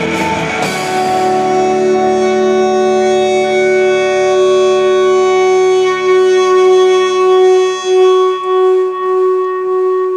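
Live band on electric guitars and drums finishing a song: the full chord gives way about a second in to a single held electric guitar note ringing on, swelling and wavering slightly near the end.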